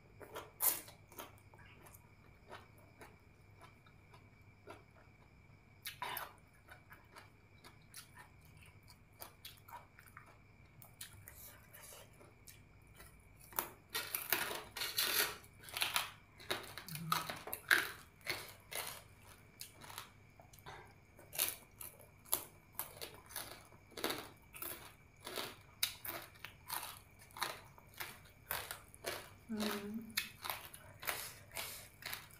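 Close-up eating: wet chewing and biting with sharp crunches, typical of crispy pork cracklings being bitten and chewed. The bites are sparse at first and become frequent and louder about halfway through.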